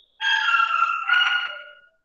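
A rooster crowing, one loud crow in two parts ending on a long held note that fades out, heard over the video call.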